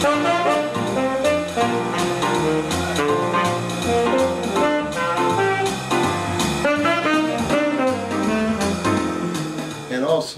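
Saxophone playing a jazz melody live, over a backing of a stepping bass line and drums.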